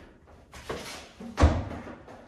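A single sharp thud of a gloved strike meeting the defender's arms as he intercepts it, about a second and a half in. It follows a softer rustle of bodies and clothing moving.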